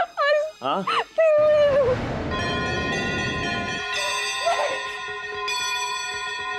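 A high, wavering wailing cry with pitch swoops, ending in a long held falling note about two seconds in, followed by a sustained eerie music chord with bell-like overtones.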